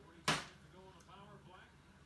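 A partly filled plastic water bottle landing on the blade of a hockey stick, one sharp smack about a third of a second in. Faint voices follow.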